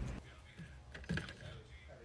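A few soft clicks and taps: a Lemurian quartz cluster being handled and set down in a plastic crate among tumbled stones.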